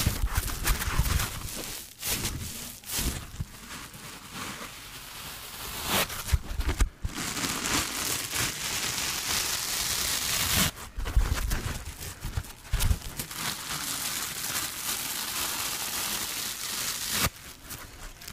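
Dry foam massage sponges squeezed and rubbed close to the microphone: a continuous scratchy, crackly rustle with a few soft thumps of handling and short pauses between squeezes.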